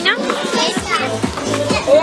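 A group of children chattering and calling out over music, with a repeating low bass note coming in about a second in.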